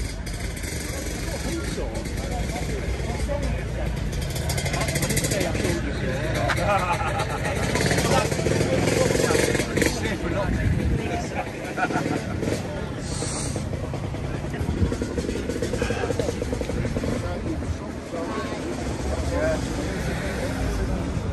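Indistinct chatter of several people talking over a steady low rumble.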